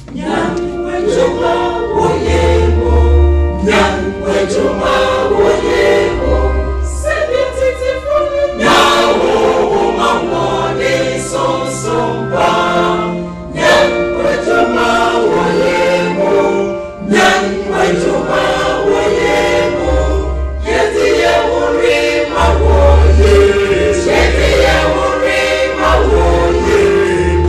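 Mixed church choir singing a gospel song in harmony, coming in right at the start, with sustained low bass notes underneath and short breaks between phrases.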